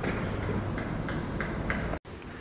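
Building-work knocking: a run of sharp, evenly spaced knocks, about three a second, over a steady background noise.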